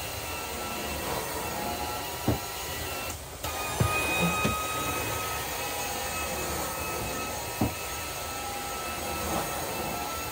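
Carpet-extraction vacuum running steadily with a faint whine, suction pulling through a cleaning wand as it is drawn across carpet. A few low thumps come through, and the noise dips briefly about three seconds in.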